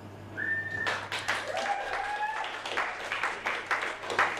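A loud whistle from the audience, then a crowd breaking into applause about a second in, with more whistles over the clapping.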